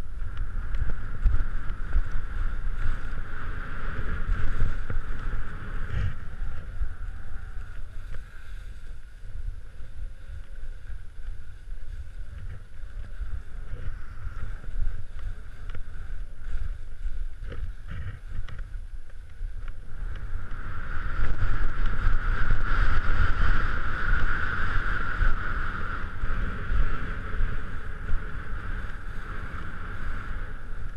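Skis hissing and scraping over wind-crusted snow on a fast downhill run, with wind buffeting the helmet-camera microphone as a steady low rumble. The scraping swells loudest in the first few seconds and again for a stretch about two-thirds of the way through.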